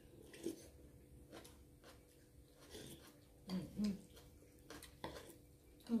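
Quiet eating of noodle soup: a spoon and chopsticks give scattered light clicks against ceramic bowls, with soft chewing. About three and a half seconds in, a voice makes two short murmured sounds.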